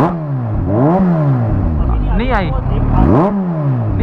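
Kawasaki H2 SX's supercharged inline-four engine free-revved while standing, with four quick throttle blips about a second apart, each rising sharply and falling away.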